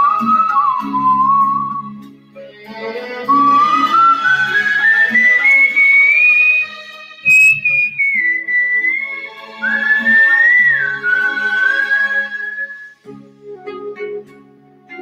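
A person whistling a melody over an instrumental backing track. The whistled line climbs step by step to a high note about halfway through, then falls back and settles lower, breaking off shortly before the end.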